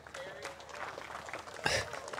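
A disc golf putt hitting the chains of a disc golf basket: one short metallic clatter about 1.7 seconds in, over faint spectator voices.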